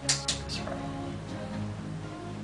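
Three sharp clicks in the first half-second as hands work the motor's wiring and multimeter, over background music of steady held tones.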